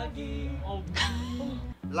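Voices from the played video clip, with a short sharp gasp about a second in; the sound drops out briefly just before the end.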